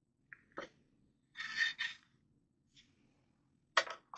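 Faint handling noise from a steel rifle receiver and parts being picked up and turned over on a workbench: a light click or two, then a short scrape about one and a half seconds in.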